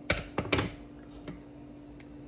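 Cookware being handled at the stove: three sharp clinks within the first second, the last one ringing briefly, then only a faint steady hum.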